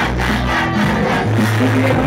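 Live hip hop performance over a club PA: a beat with a heavy, sustained bass line, and the crowd shouting along.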